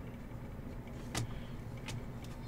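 Trading cards being handled and slid past one another, with two short clicks less than a second apart, over a steady low hum.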